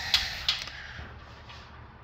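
Quiet room tone with two short soft clicks in the first half second, then a faint hiss that fades.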